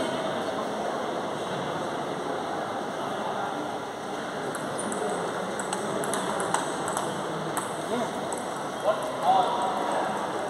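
Table tennis rally: the plastic ball clicks sharply off the bats and table in a quick series of ticks a few seconds in, over steady background chatter in a large echoing sports hall.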